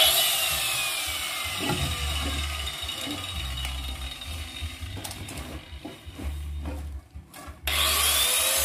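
Angle grinder's motor coasting down after being switched off, its whine falling slowly in pitch over a few seconds, with a few knocks of handling. Just before the end the grinder is switched on again and its whine rises as it spins up.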